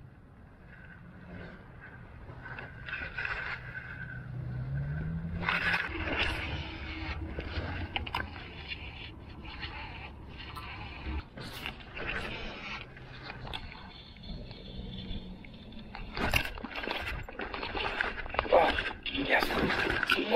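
Low hum of an electric trolling motor that rises in pitch about four seconds in and stops about eleven seconds in. Scattered knocks and clicks run through the second half.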